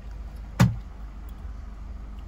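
A single sharp knock or bump about half a second in, over the steady low hum of a car's interior.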